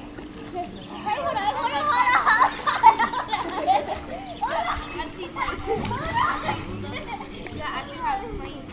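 People in a swimming pool laughing and shrieking without clear words, loudest in the first half, with light splashing and a steady low hum underneath.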